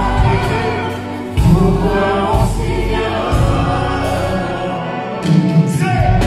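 Live hip-hop/R&B performance with an orchestra: a male singer singing into a microphone over sustained orchestral parts and heavy bass.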